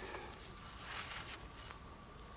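Faint rustling and light handling noise with a few small ticks.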